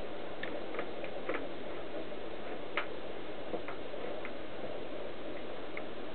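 Scattered light ticks and clicks, about seven in six seconds, as a paper-wrapped plate is handled and positioned on a workbench under an electric drill, over a steady even noise.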